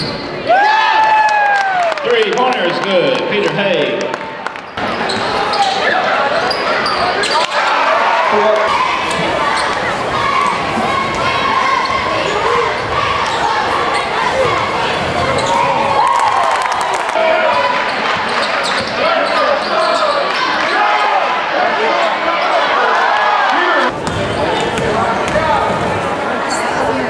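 Live basketball game sound in a gym: a ball bouncing, short rising-and-falling sneaker squeaks on the hardwood, and spectators talking and calling out, all echoing in the hall. The sound changes abruptly a few times where the footage cuts between games.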